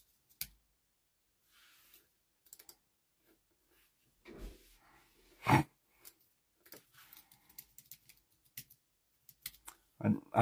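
Quiet, scattered tapping and clicking, as of typing, with one short louder sound about five and a half seconds in.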